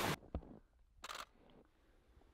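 DSLR camera shutter firing: a faint click about a third of a second in, then a short, sharp shutter release about a second in.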